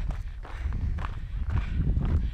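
Footsteps crunching on a gravel path at a brisk walk, irregular steps.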